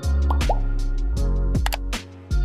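Background music with a steady beat and deep bass, overlaid near the start with two short rising 'plop' sound effects and, about three-quarters through, a sharp click, the sound effects of an animated subscribe-button overlay.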